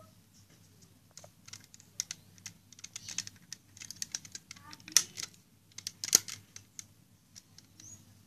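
Hard plastic clicks and taps from a Bandai DX Sakanamaru toy sword being handled, fingers working at its slide switch: an uneven string of sharp clicks, the loudest about five and six seconds in.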